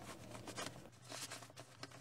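Faint rustling and handling of a nylon backpack and the things inside it, with a few soft clicks and a brief hiss a little over a second in.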